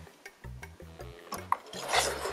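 VTech 'Lustige Fahrschule' toy steering wheel playing a quiet electronic driving tune through its small speaker, with a sharp plastic click about one and a half seconds in.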